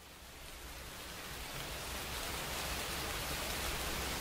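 Rain falling, fading in from quiet and growing steadily louder.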